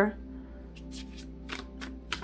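Tarot cards handled and shuffled by hand: a run of about six quick, light card snaps and flicks through the second half.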